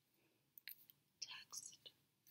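Faint, crisp clicks and soft slaps of a small tarot deck being shuffled by hand: a couple of single clicks about half a second in, then a quick cluster near the end.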